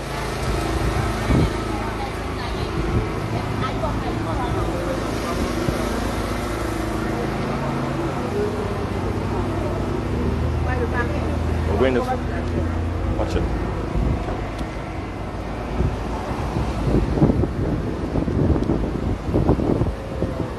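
Busy town street: vehicle engines running and passing, with snatches of people's voices nearby.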